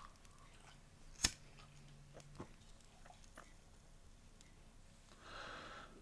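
A quiet pause while a man draws on a cigarette: a single sharp click about a second in, then a soft breath out near the end.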